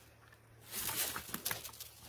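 Faint rustling and light irregular crunching steps on dry leaf litter and old snow, starting about half a second in after a brief near-silence.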